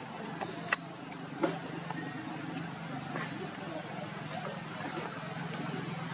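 A steady low engine hum, with two sharp clicks a little under a second apart near the start.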